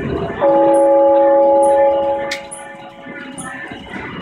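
A bell-like chime struck about half a second in, several steady pitches together, ringing out and fading over about three seconds.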